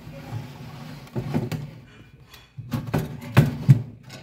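Aluminium egg tray of a home-built egg incubator being slid back in on its rails, scraping and rattling, with two sharp knocks near the end as it seats.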